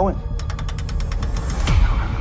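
Puzzle box mechanism ratcheting: a rapid, even run of about a dozen sharp clicks as the box is worked, followed near the end by a sound falling in pitch into a deep rumble, over a low droning bed.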